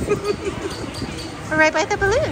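Indistinct conversation and table chatter, with a brief high-pitched voice near the end.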